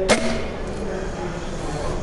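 Excalibur Bulldog 380 recurve crossbow firing once: a single sharp snap of the string and limbs releasing just after the start, then the steady din of a busy hall.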